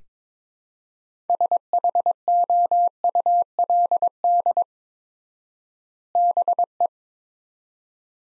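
Morse code sent as a single steady beep tone at 22 words per minute, spelling out the word pair "SHOULD BE" in dots and dashes. The first word's letters run for about three seconds, and after a long pause of extra word spacing the short second word follows near the end.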